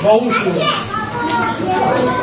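Chatter of children and adults talking over each other, with children's voices nearest.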